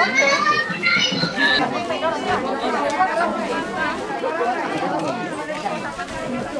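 Crowd chatter: many people talking at once, none of it clear, with one higher voice louder in the first second or so.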